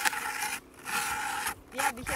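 Hand ice auger cutting into lake ice as it is cranked, its blades scraping and rasping in two spells with a short pause between.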